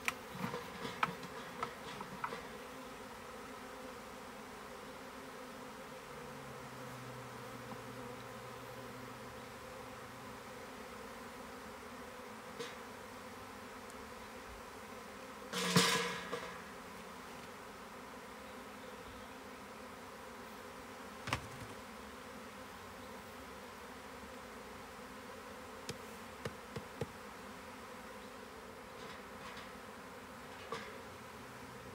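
A swarm of honeybees buzzing steadily around an open hive box. Scattered knocks from handling the hive's wooden parts come through the hum, a few in the first couple of seconds and more later, with the loudest, a brief thump, about halfway through.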